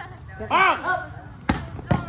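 A volleyball struck by hand twice in quick succession, two sharp smacks near the end, with a player's shout before them.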